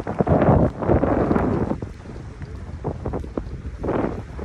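Wind buffeting the microphone in irregular gusts, loud for the first two seconds and then easing off.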